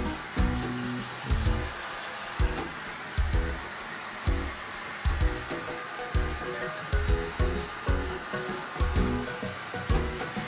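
A handheld hair dryer blowing steadily, drying a French bulldog's coat after a bath, under background music with a regular beat of low bass hits about once a second.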